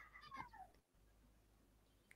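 Near silence, with a faint, short falling-pitched sound in the first half-second.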